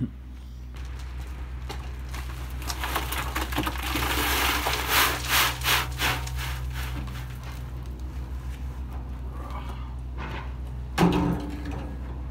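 Dirt and stones pouring out of a tipped wheelbarrow into a hole: a long rustling, scraping pour with crackling stones, loudest a few seconds in, over a steady low hum. A brief voice sound comes near the end.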